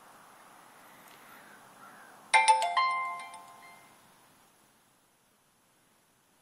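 A bright chime: several bell-like tones struck in quick succession about two seconds in, ringing out and fading away over about two seconds, over a faint background hiss.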